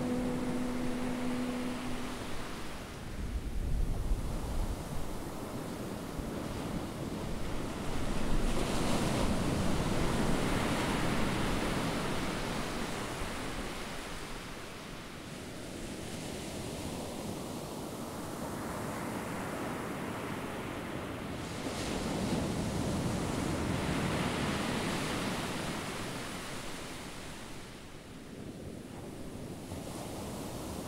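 Sea waves washing in, a steady rush that swells and fades slowly. A held musical note dies away about two seconds in.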